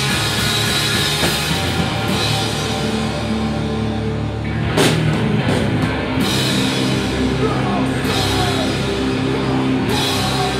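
A loud live heavy rock band: distorted electric guitar and bass over a drum kit, with a sharp loud hit about halfway through.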